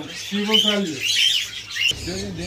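Small caged birds chirping: short, arched chirps repeated several times, over a murmur of voices.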